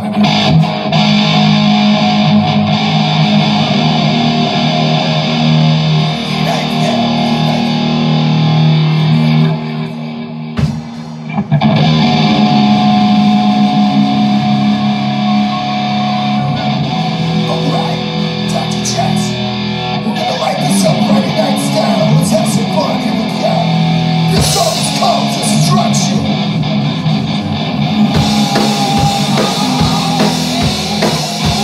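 Live rock band playing, led by electric guitar with drums, with a short drop in volume about a third of the way through.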